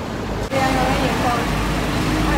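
Busy street-market ambience: a steady low rumble of traffic under indistinct chatter of people nearby. The background changes abruptly about half a second in.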